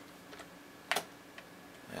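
Computer keyboard keystrokes as a number is typed in: one sharp key click about a second in, with a couple of fainter taps around it.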